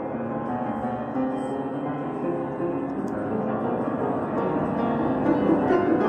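Piano music that gradually gets louder as it fades in.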